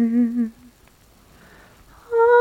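A person's voice humming one long held note with a slight wobble, which stops about half a second in.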